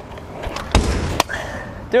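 Stunt scooter clattering on stone paving: a thud about three quarters of a second in, half a second of wheel noise, then a sharp clack.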